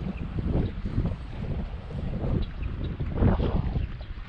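Wind buffeting the camera microphone: a low, uneven rumble that swells in gusts, strongest about three seconds in.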